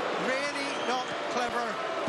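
A male TV commentator talking over the steady noise of a stadium crowd.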